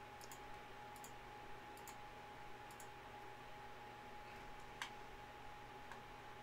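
Faint computer mouse clicks, a handful spread unevenly, the clearest about five seconds in, over quiet room tone with a faint steady hum.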